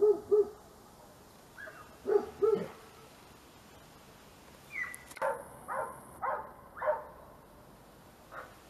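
Dogs barking as they play and wrestle: a quick run of low barks right at the start, two more about two seconds in, then four higher-pitched barks in a row between about five and seven seconds.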